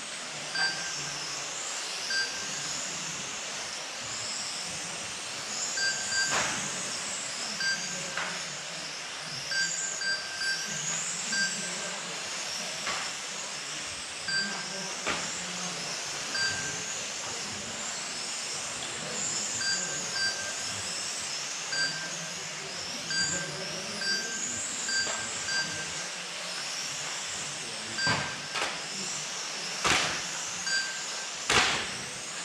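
Electric motors of several 1/12-scale radio-controlled racing cars whining, the pitch repeatedly rising and falling as the cars accelerate and brake around the track. Short electronic beeps come at irregular intervals, typical of a lap-timing system as cars cross the line, and a few sharp knocks are heard.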